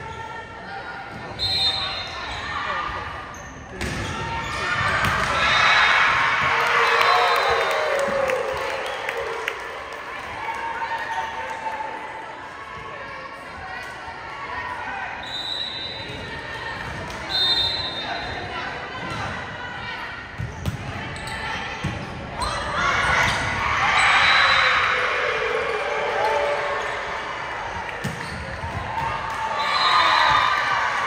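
Volleyball being played in a large, echoing gymnasium: ball contacts and footfalls on the hardwood, short referee whistle blasts, and the crowd and players shouting and cheering in two loud surges as points are won.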